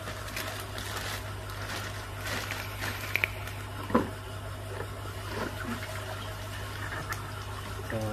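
Water sloshing inside a clear plastic bag as it is handled, with the plastic crinkling and a sharper splash or knock about four seconds in, over a steady low hum.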